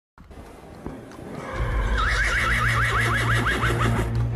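A horse whinnying: one long neigh starting about two seconds in, its pitch wavering up and down about six times a second, over intro music with a steady bass that comes in about a second and a half in.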